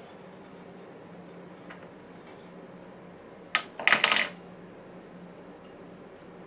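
Fly-tying tools and materials being handled at the vise: one sharp click about three and a half seconds in, then half a second of quick clattering, crackly noise, over a faint steady hum.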